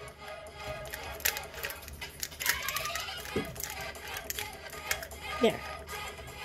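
Plastic 3x3 Rubik's cube being turned by hand, its layers clicking and clacking several times a second as a solving algorithm is run through, over quiet background music.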